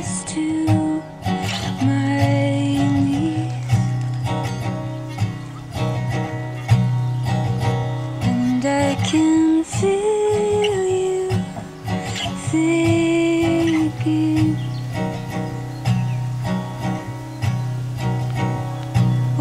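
Steel-string acoustic guitar played live, a steady picked bed of chords, with a melody of long held notes on top that slides from pitch to pitch.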